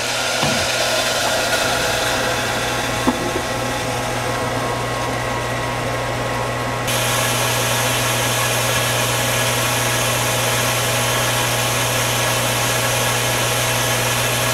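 Jet pump motor running steadily, a hum under a rushing hiss, as it pumps water into the pressure tank and builds pressure toward the switch's 50 PSI cut-out. The hiss grows brighter about halfway through.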